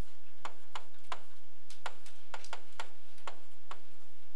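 Stylus tapping and clicking on a tablet screen while numbers are handwritten: about a dozen sharp, irregularly spaced ticks.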